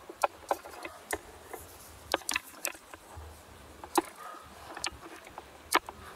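Ratchet strap being tightened to pull two timber wall frames together: about a dozen sharp clicks at uneven intervals from the ratchet.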